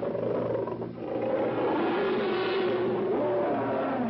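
Film sound effect of monster creatures crying out as they fight: a loud, continuous mix of growls and shrill cries with a short dip about a second in.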